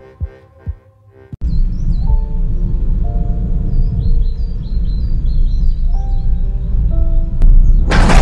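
A song's last notes fade out. About a second and a half in, a steady low rumble starts suddenly, with birds chirping and a few held music notes over it.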